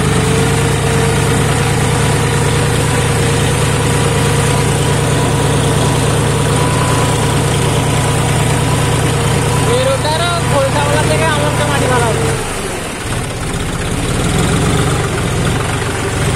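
John Deere tractor's diesel engine running steadily under load with a steady whine as it pulls through a flooded, muddy paddy field. The engine note drops briefly about twelve and a half seconds in, then picks up again.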